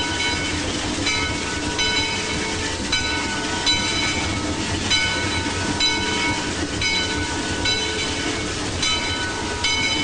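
Steam train running with a steady rumble, its bell ringing in an even rhythm about once every three quarters of a second.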